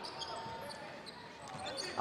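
Basketball being dribbled on an indoor court, with faint, short, high-pitched sneaker squeaks from players running.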